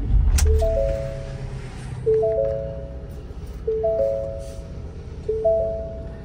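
Ford Transit Connect engine starting and settling into a steady idle. Over it, the instrument cluster's three-note warning chime sounds four times, about every second and a half, starting about half a second in.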